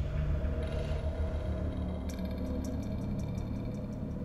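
A low steady drone and rumble, joined about halfway through by a rapid, even ratchet-like ticking of about seven clicks a second that stops near the end.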